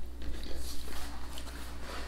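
Quiet chewing and mouth sounds of people eating soup, with a few faint clicks, over a steady low hum.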